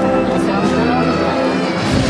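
Procession band music with long held brass notes, under the chatter of a dense crowd.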